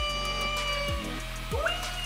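Drill spinning a small canvas for spin art: a steady whine that eases off about a second in and winds up again near the end. A regular beat of background music runs underneath.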